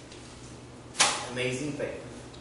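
A Bible page being turned over: one sudden swish about a second in, followed by a brief murmur from a man's voice.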